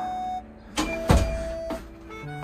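A dull thump with a low rumble about a second in, alongside a sustained steady tone.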